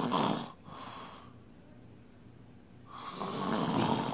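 A performer's mock snoring right into a close microphone: two long snores about three seconds apart, each followed by a softer breath out.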